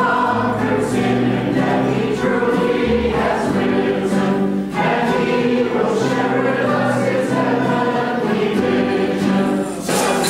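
A congregation and worship team singing a hymn together as a group, accompanied by a small band with violin and guitars.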